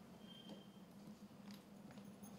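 Near silence: faint room tone with a low steady hum and a few faint ticks.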